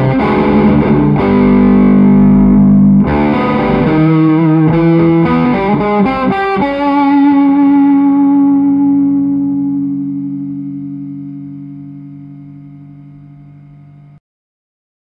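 Distorted electric guitar with Seymour Duncan pickups through a Peavey Classic amplifier, playing free-improvised metal chords. About halfway through, a final chord is struck and left to ring, slowly fading away.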